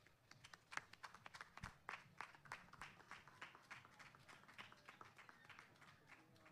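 Faint, scattered applause from a small audience: a few people clapping unevenly, thinning out towards the end, marking the end of a panelist's talk.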